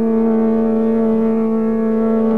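Male Hindustani classical vocalist holding one long, steady note in Raag Kedar.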